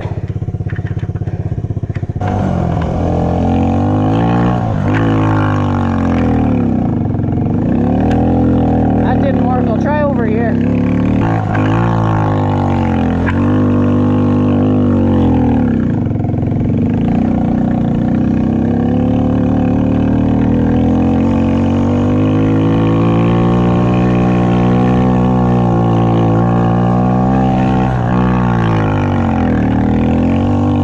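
Snow quad's engine (an ATV on a rear track kit and front skis) picking up about two seconds in, then revving up and down repeatedly under throttle as it is ridden through snow, with a longer steadier run later.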